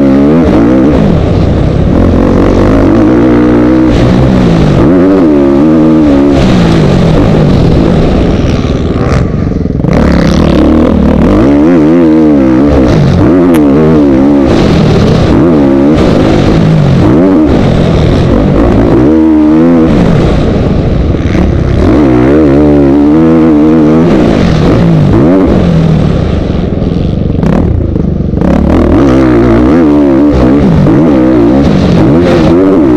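Motocross bike engine heard on board, very loud, revving up in pitch and dropping back again and again as the rider accelerates through the gears and rolls off the throttle, with a steady rush of noise underneath.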